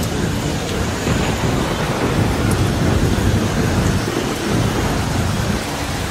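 Heavy rain falling steadily, with a low rumble of thunder underneath.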